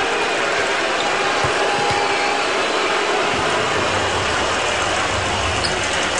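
Steady din of a basketball arena crowd, a continuous wash of many voices and noise at an even level.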